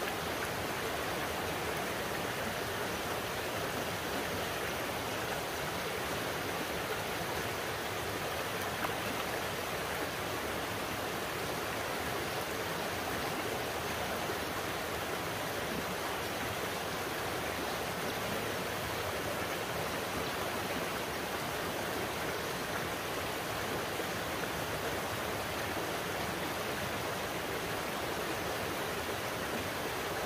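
Steady rushing sound of flowing water, even and unbroken throughout.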